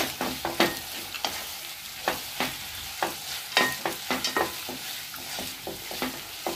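A spoon stirring and scraping soaked sago pearls (sabudana khichdi) as they fry in a pot. The spoon clacks irregularly against the pan over a light frying sizzle, with a sharper knock right at the start.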